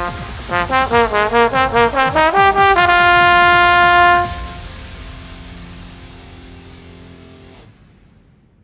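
Tenor slide trombone playing a quick run of short notes, then holding one long final note that stops about four seconds in, leaving a fading tail that dies away near the end.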